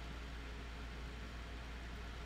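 Steady low hum with a faint even hiss: room tone, with no distinct sound.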